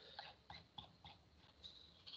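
Near silence with faint, irregular clicks of a computer keyboard and mouse, a few a second, during copying and pasting of code.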